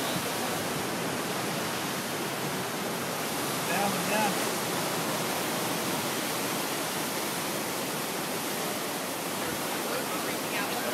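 Ocean surf breaking against the rocks at the foot of a sea cliff: a steady, even wash of whitewater noise with no distinct waves standing out.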